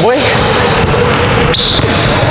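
Basketball being dribbled on an indoor gym court.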